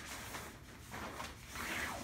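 Rustling and rubbing of a mesh tent insert against a pop-up pod tent's fabric and clear PVC panels as it is pushed into place, louder near the end.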